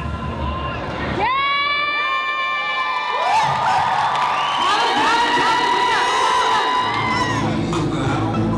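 Audience cheering with long, high-pitched screams that break out about a second in and swell again around three seconds in.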